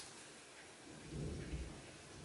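Faint handling noise from a comic book in a plastic bag with a backing board being picked up off carpet: a light tap at the start, then a low dull rumbling bump about a second in, over steady hiss.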